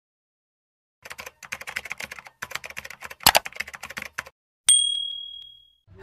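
Rapid run of key-typing clicks for about three seconds, then a single bright ding that rings out and fades over about a second.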